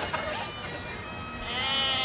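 Bagpipe music with its steady drone, and a sheep bleating once near the end.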